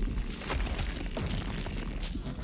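Animated-film creature sound effects from the Hydra's severed neck stump as it swells to regrow heads. A deep, continuous rumble is broken by sudden booming bursts.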